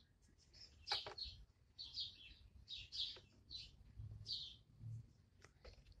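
Faint birds chirping, short high calls repeated every half-second or so, with a few light clicks in between.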